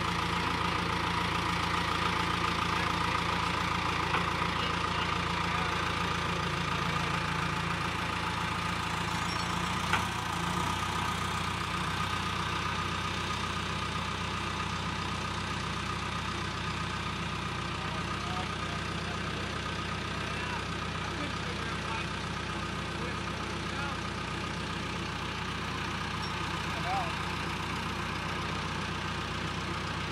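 An engine idling steadily. Its low hum shifts slightly about ten seconds in, where there is a single short click.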